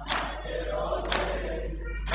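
A congregation of mourners beating their chests in unison (matam): two sharp slaps about a second apart, with the group's chanting voices between them.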